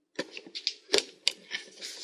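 Handling noise: an irregular run of sharp clicks and knocks, the loudest about a second in.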